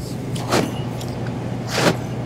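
Two short scraping swishes as a large fish steak is handled over crushed ice, one about half a second in and one near the end, over a steady low machine hum.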